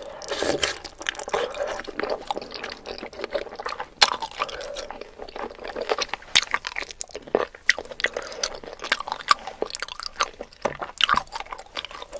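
Close-miked chewing and lip smacking of a chicken foot in thick spicy seblak sauce: wet, squishy chews broken by many sharp, irregular crackly clicks, busiest just after the start.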